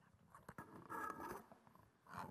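Faint handling noise from a handheld microphone: fingers rubbing and tapping at the mic, with a few small clicks and a short rustle about a second in.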